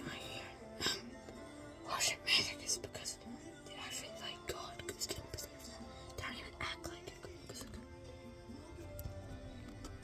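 Quiet background music with a boy whispering faintly over it.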